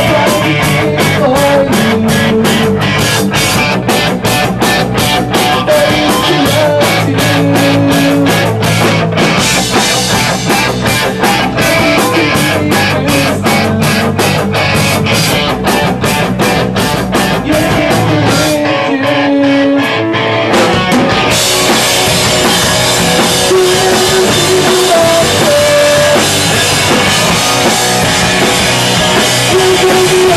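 A live emo rock band playing loud: electric guitars over a drum kit with fast, evenly spaced cymbal hits. About two-thirds of the way through, the drums and bass drop out for about two seconds, leaving only a few held notes, then the full band comes back in.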